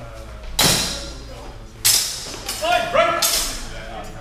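Steel practice longswords clashing three times during a fencing exchange, each strike ringing and echoing in a large hall, with a short shout between the second and third.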